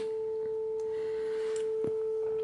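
A steady, pure mid-pitched test tone from a phone's sine-generator app, with a faint overtone, played into the preamp's microphone. A faint click comes near the end.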